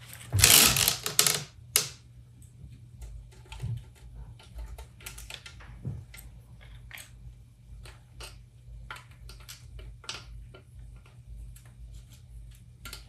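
Needle-nose pliers and small metal parts clicking and tapping on a KitchenAid stand mixer in short, irregular ticks, after a loud rustle in the first second and a half. A steady low hum runs underneath.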